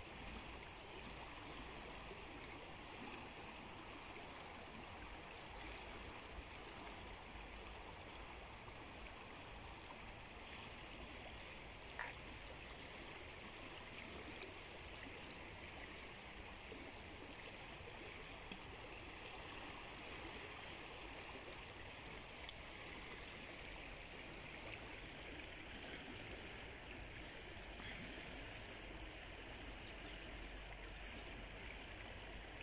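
Steady, fairly faint sound of a wide river's current flowing past the bank, with a couple of brief faint clicks partway through.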